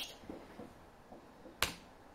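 A single sharp click about one and a half seconds in, from a computer mouse or keyboard, as the program is launched from the code editor.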